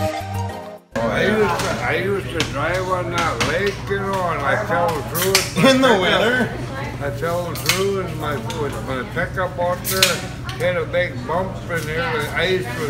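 Music that cuts off about a second in, followed by indistinct voices of people talking in a bar, over a steady low hum and a few sharp clinks of glass or dishes.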